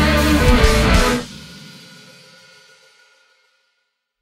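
Rock band with electric guitars, bass and drums playing loud, then stopping dead about a second in; the last chord rings on and fades away to silence.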